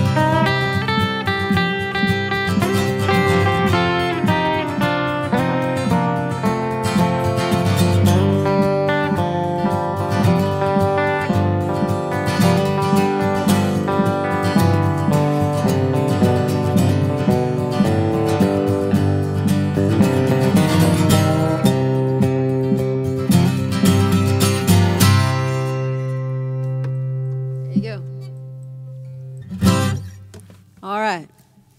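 Acoustic guitar strumming under an electric guitar playing lead lines: the instrumental ending of a country song. About 25 seconds in they stop on a final chord that rings on and fades away.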